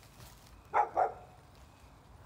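A dog barking twice in quick succession, two short barks.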